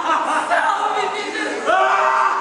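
Many people's voices at once, overlapping, with several fairly high voices rising and falling in pitch.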